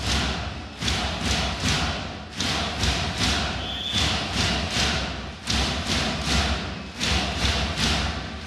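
Crowd in a packed sports hall clapping and drumming in rhythm: repeated sharp beats about three a second, coming in groups with short gaps, over the general noise of the crowd.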